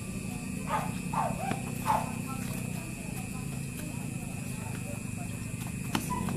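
A steady low background hum, with a few faint, brief voice-like calls in the first two seconds.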